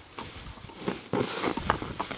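Rustling and handling of a large stuffed plush toy on grass, with a few soft knocks about halfway through and near the end.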